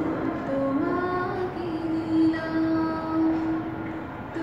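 A woman singing a Bengali song solo, a single melodic voice line that settles into a long held note about midway, over a noisy background hiss.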